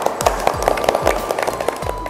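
A small group clapping their hands, a quick patter of irregular claps, over background music with a steady beat.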